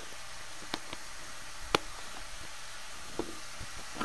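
Ground beef frying in a skillet on medium-high heat, a steady soft sizzle with a few sharp crackles, the loudest just before the middle.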